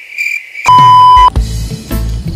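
Cricket-chirping sound effect, the 'krik krik' awkward-silence gag after a bad joke, with steady pulsing chirps. About two-thirds of a second in it gives way to a loud steady beep for about half a second over a deep bass hit, and then music with a low beat.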